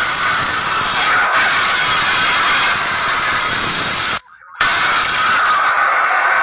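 Loud, steady whine of a jet airliner's turbines on the apron, with high held tones over a rushing noise. It cuts out briefly about four seconds in.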